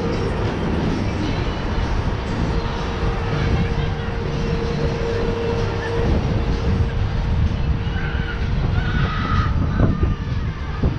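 Wind rumbling over the microphone on a moving chair swing ride, with the steady hum of the ride's machinery underneath that fades after about six seconds.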